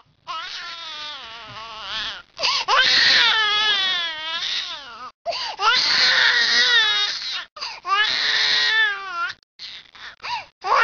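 An infant crying in four long wailing cries of about two seconds each, the pitch wavering, with short breaks for breath between them.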